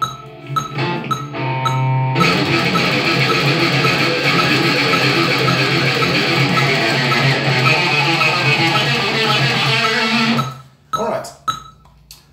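Electric guitar playing a fast chromatic exercise in sixteenth notes, four notes to each tick of a metronome click track. The click ticks nearly alone for about two seconds, the rapid picking runs until about ten and a half seconds in, then stops and the click goes on by itself.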